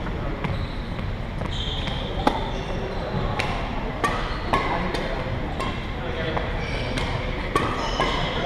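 Badminton play in a gymnasium: a run of sharp racket-on-shuttlecock hits and short squeaks of court shoes on the wooden floor, echoing in the hall over background chatter.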